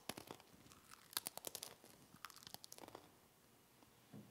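A priest chewing the dry communion host: a faint run of small crunches and crackles over about three seconds.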